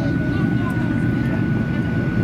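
Boeing 737-800 cabin noise in flight: a steady low rumble of the engines and airflow, with a thin steady high-pitched tone above it.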